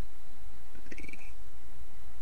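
Steady low background hum, with a brief faint sound about a second in.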